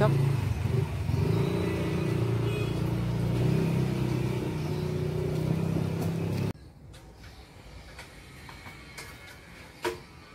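An engine running steadily nearby, its low hum drifting slightly in pitch, cutting off abruptly about six and a half seconds in. After that it is much quieter, with a single sharp click near the end.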